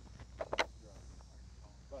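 A quick cluster of two or three sharp sounds about half a second in, with a quiet voice near the end.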